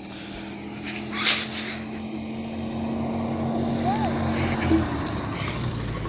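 A car approaching along the road, its engine and tyre hum growing steadily louder. A brief rush of noise about a second in.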